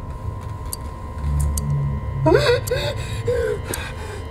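A high voice gasping and whimpering in short, pitched breaths from about two seconds in, over a brief low rumble just before it.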